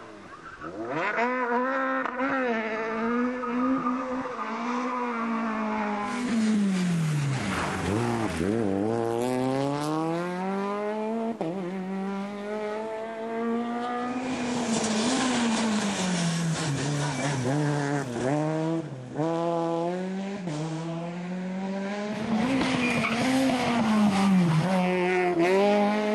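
A rally car's engine revs hard through the gears, its pitch climbing and falling again and again as it accelerates, shifts and brakes. About midway a rushing hiss rises over the engine.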